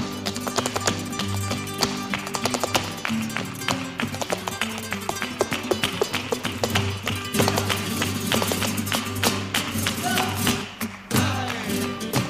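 Flamenco zapateado: a dancer's heeled shoes striking the floor in fast, rhythmic taps over flamenco guitar playing and hand-clapping palmas. The footwork breaks off briefly near the end, then resumes with a loud strike.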